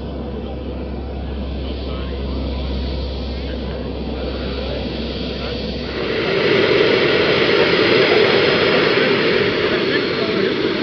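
Twin JetCat P80 model jet turbines of a large RC airliner running at taxi power. A steady low hum lies under the first six seconds. About six seconds in, the sound changes and gets louder.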